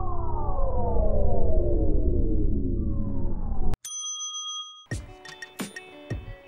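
Intro sound effect: several tones sliding down in pitch together over a held low chord for nearly four seconds, cut off abruptly by a brief high bell-like ding that rings for about a second. Quiet background music starts near the end.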